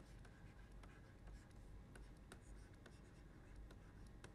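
Faint, irregular small taps and scratches of a stylus writing on a tablet screen, over a faint low hum.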